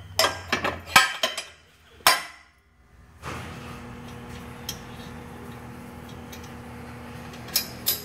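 Steel hitch pins clinking and knocking against the steel mounting plate as they are pushed into their holes: a few sharp metallic clicks in the first two seconds. From about three seconds in a steady low hum runs under a couple of faint clicks.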